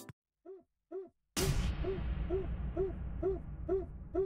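A short, low hooting tone repeating about twice a second, first twice on silence, then over a steady hiss of room noise that starts about a second and a half in.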